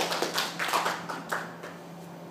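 Short applause from a small audience, a few people clapping unevenly and dying away after about a second and a half.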